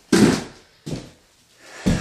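Three short, dull thumps, the first the loudest and the last the deepest, with quiet between them.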